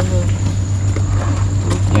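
An engine running steadily on a small boat, giving an even low drone with a thin steady high whine above it.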